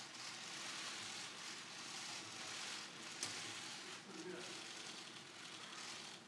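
Press-room background murmur with scattered camera shutter clicks; one sharp click about three seconds in.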